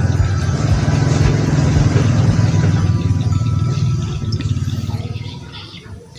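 A loud, low engine rumble that comes in abruptly and fades away over the last two seconds.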